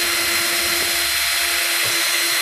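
Power drill running at a steady speed, its twist bit boring a pilot hole through a white 2-inch PVC pipe coupling. The motor gives an even whine over the cutting noise.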